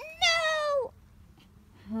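A high-pitched voice giving one short wordless wail that slides down in pitch, lasting just over half a second, with a second voice starting to rise in pitch right at the end.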